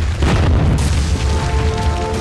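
Cinematic boom sound effect: a deep rumble with a crash of breaking, crumbling debris starting a fraction of a second in. Steady musical tones come in over it near the end.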